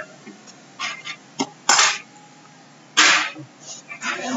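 Two sneezes, a little over a second apart.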